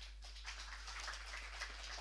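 Audience applauding, the claps starting at once and growing fuller about half a second in.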